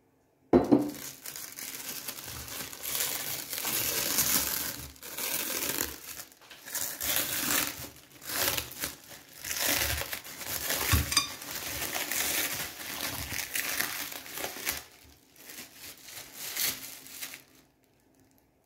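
Plastic cling film crinkling as hands peel and pull it away from a molded dome of set plum marmalade. It starts with a sharp crackle about half a second in, then goes on in uneven surges of rustling.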